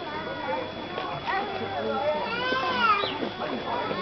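Indistinct, overlapping chatter of several people, with a high voice rising and falling a little past halfway.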